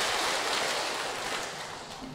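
Audience applauding, starting abruptly and fading away over about two seconds.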